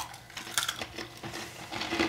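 Toasted cinnamon-sugar pecans being crunched while chewed: an irregular run of small, crisp cracks.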